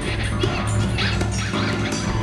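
Freely improvised jazz from a quartet of electric keyboard, balalaika, accordion and electric guitar, over a steady low drone. Short high gliding sounds flicker above it.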